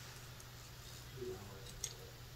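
Quiet room tone with a steady low hum, a faint soft sound a little past the middle and one short click near the end.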